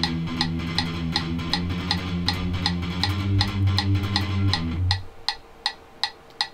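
Electric guitar playing a fast palm-muted riff on the low strings, chugging over a metronome that clicks about 160 beats per minute. The guitar stops about five seconds in while the metronome clicks on.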